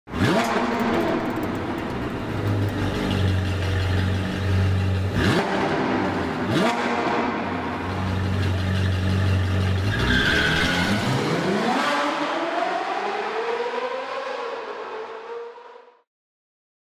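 A sports car engine running and revving hard, with two quick sharp rev blips midway, then a long climbing rev in the second half that fades away at the end.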